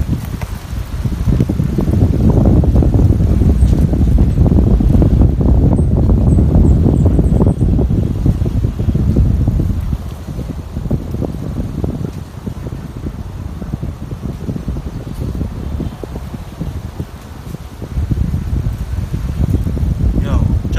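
Wind buffeting the microphone: a loud, low rumble that is strongest in the first half and eases off about halfway through.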